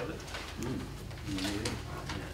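Two short, low murmured voice sounds, a quiet hum-like utterance about half a second in and another near the middle, with light paper rustling over a steady electrical hum.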